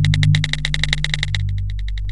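Electronic intro-sting music: a fast ticking pulse, about a dozen ticks a second, over a low held synth drone. The ticks thin out and slow near the end.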